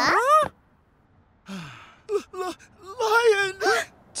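Wordless cartoon character voices: a rising-then-falling wail at the very start, then after a short pause a brief falling groan and a string of moaning, wavering voice sounds.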